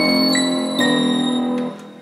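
Trap beat melody played back in Reason: a bell patch layered with a studio piano patch, three notes struck about a third to half a second apart over sustained chords, then ringing out and fading near the end.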